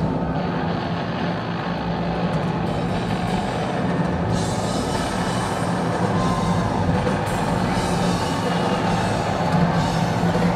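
Live rock band, with electric guitars, bass guitar and drum kit, playing a dense, steady passage at full volume.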